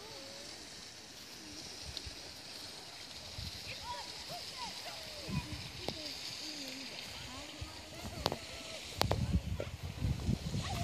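Faint, distant voices of people talking and calling across an open beach over a steady background hiss. Near the end come a couple of sharp clicks and a louder low rumble.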